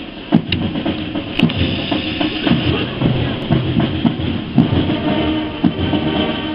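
Brass band drums beating a steady marching cadence, about two strokes a second, with voices mixed in.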